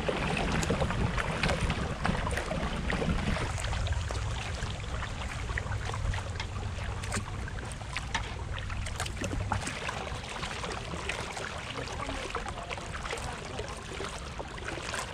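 Water splashing and dripping around a kayak moving down a slow river: scattered small drips and splashes from the paddle, over a low rumble of wind on the microphone that drops away about ten seconds in.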